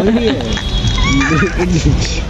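Indistinct voices talking, with a short high-pitched call about a second in.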